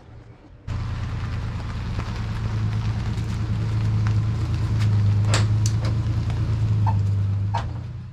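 Ford Ranger pickup's engine running as the truck backs up toward the garage, growing louder as it comes closer, then fading near the end. A few sharp clicks or knocks are heard in the last few seconds.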